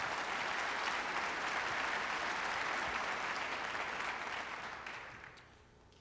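Auditorium audience applauding after an answer, steady for about four seconds and then dying away near the end.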